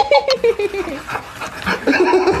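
A person laughing in a quick, breathy run of 'hee-hee' pulses that fall in pitch and trail off within about a second.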